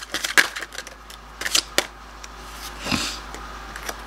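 A deck of oracle cards being shuffled by hand: an irregular run of short, sharp card snaps and clicks, thickest in the first couple of seconds and sparser after.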